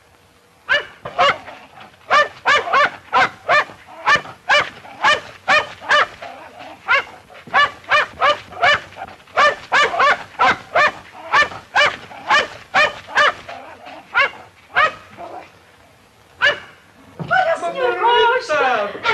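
A dog barking over and over in quick short barks, about two or three a second, with a brief lull near the end, on an old film soundtrack.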